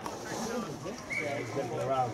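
Indistinct voices of spectators and players talking at a distance, with no clear words, and a brief faint high tone about halfway through.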